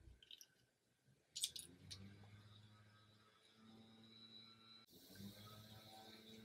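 Near silence: room tone, with a short cluster of faint clicks about one and a half seconds in.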